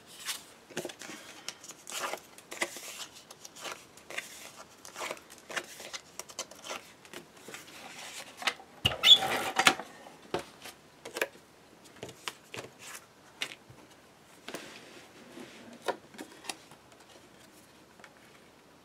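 Sheets of cardstock being slid, lifted and tapped down on a tabletop, with scattered soft rustles and clicks. About nine seconds in comes a louder, noisier stretch of about a second as a pistol-grip adhesive tape gun is run along the back of a card mat.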